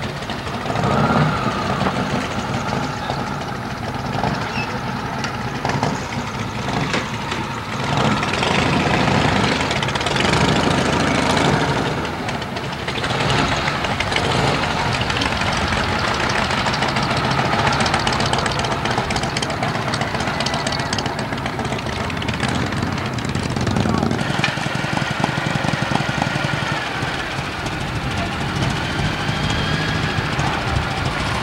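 Motorcycle engines running, mixed with indistinct voices of people nearby.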